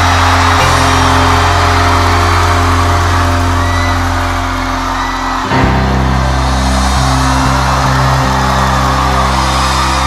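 Live concert music with long held low chords that change to a new chord about five and a half seconds in, with audience cheering over it.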